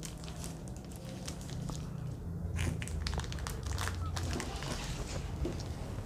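Handling noises at a table: a run of crinkles and small clicks, like plastic packaging and equipment being moved, over a low steady hum.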